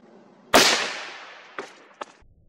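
A suppressed 6.5 PRC rifle shot into ballistic gel: one sharp crack about half a second in that rings out and dies away over about a second. A short knock follows about a second later.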